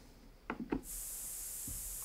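Violet noise, a colour-noise sleep sound weighted to the highest frequencies, played as a steady, soft high-pitched hiss that starts about a second in. Two faint taps come just before it.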